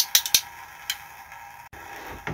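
A few light, sharp clicks, most of them in the first second, over a low steady room hiss.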